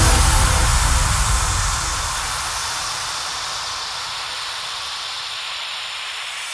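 White-noise sweep effect in a progressive trance breakdown, a hissy wash that slowly fades away after the kick and bass have dropped out, the last of the bass dying in the first couple of seconds.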